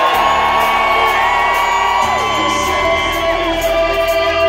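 Rock band playing live in an arena, heard from the crowd, with a long held note that fades out about three and a half seconds in. Audience members whoop and yell over the music.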